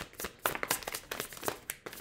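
Deck of tarot cards being shuffled by hand: a quick, irregular run of card slaps and taps.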